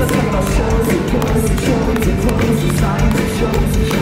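Live pop-punk band playing a song loud through the concert PA: electric guitars, bass and drums, with regular drum hits throughout. Recorded from within the crowd, so the sound is dense and the low end heavy.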